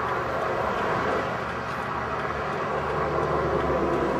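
Freeway traffic passing close by a car stopped on the shoulder: steady road noise, with a heavier low rumble swelling about two and a half seconds in as a vehicle goes past.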